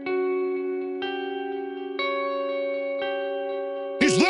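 Electric guitar through effects with echo, striking a new sustained chord about once a second, four in all, each ringing on into the next, in a quieter passage of a metal track.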